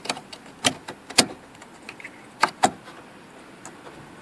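Sharp plastic clicks and knocks from handling the wiring harness and connector on top of a car's in-tank fuel pump assembly: about five, the loudest a little over a second in and two close together about two and a half seconds in.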